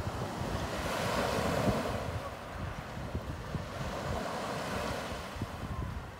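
Sea surf washing up and back over a pebble beach, swelling about a second in and again around four seconds.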